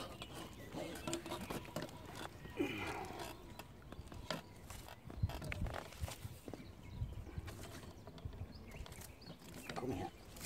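Scattered light clicks and knocks from a landing net and fishing tackle being handled while a hooked bream is landed.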